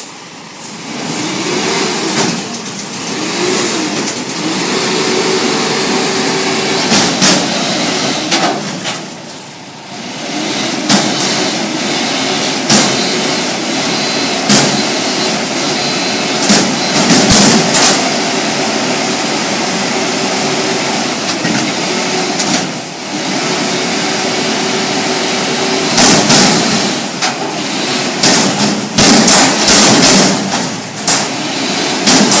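Front-loader garbage truck's diesel engine revving to drive the hydraulic lift arms as they raise a steel dumpster over the cab and tip it, with loud metal bangs and clanks from the container as it empties into the hopper.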